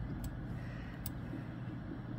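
Room tone: a steady low hum, with two faint ticks about a quarter second and about a second in.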